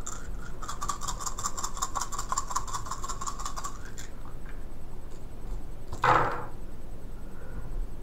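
Handful of plastic attack dice rattled in a hand, a rapid clicking for about three seconds, then a short clatter about six seconds in as they are thrown onto the table.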